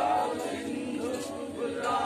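A group of voices singing together in chorus, unaccompanied.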